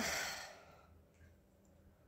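A woman's breathy sigh out through the mouth, starting suddenly and fading away over about a second.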